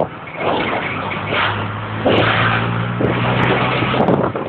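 A moving vehicle's engine running, mixed with road and wind noise; a steady engine hum comes in about a second and a half in.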